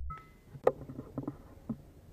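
A brief two-tone electronic beep, then a run of irregular light clicks and taps, the loudest about two-thirds of a second in.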